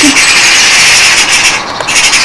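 Loud, steady scratchy rubbing noise, with a brief dip in loudness near the end.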